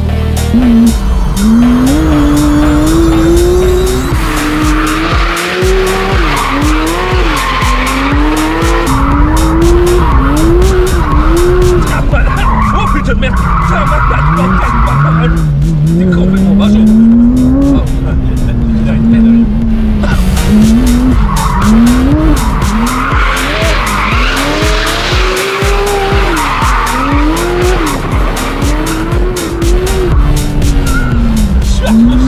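The Porsche 992 GT3 RS's naturally aspirated 4.0-litre flat-six, fitted with an FI aftermarket exhaust, is revved up and down over and over under hard driving. Its tyres squeal and skid as the car slides.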